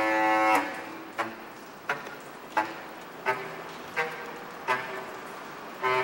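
Bass clarinet playing a slow run of short, sharply tongued notes, a longer note first and then roughly one every 0.7 seconds, each fading before the next.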